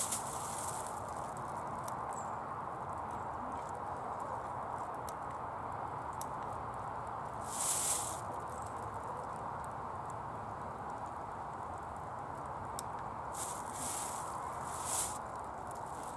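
A plastic carrier bag holding potatoes rustling in short bursts as it is handled and hangs from a digital hanging scale: once at the start, once near the middle and three times close together near the end, over a steady background hiss.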